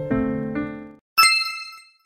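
Piano music fades out, then a single bright chime sound effect rings out about a second in and dies away, the cue for the answer reveal.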